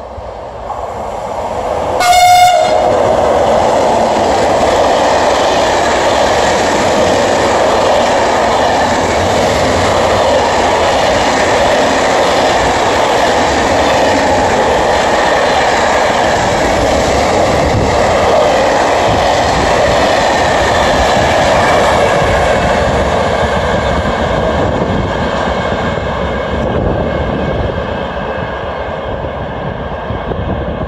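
An electric freight locomotive gives a short horn blast about two seconds in. Then a long container freight train passes close by for over twenty seconds, its wagons' wheels running over the rails, before the noise starts to fade near the end.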